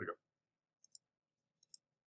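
Computer mouse button clicked twice, about a second apart, each a sharp press-and-release double tick, over faint room tone.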